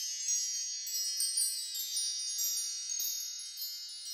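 Sparkle-chime sound effect of a logo intro: a cluster of high, bell-like wind-chime tones ringing and slowly fading, with a few fresh tinkles along the way.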